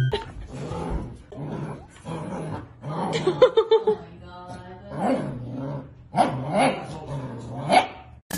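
Golden retrievers growling and yipping in play over a toy: a run of short calls that rise and fall in pitch, with louder clusters a few seconds in and near the end.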